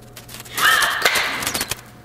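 A loud crackling burst about half a second in, lasting about a second, with a high-pitched tone running through it: the staged electric-shock effect of a USB stick pushed into a wall outlet.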